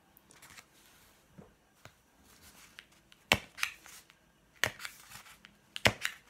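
A thin pointed tool pushed through the rim of a paper plate to make holes: quiet rubbing and rustling of the paper, then three sharp pops about a second and a bit apart in the second half.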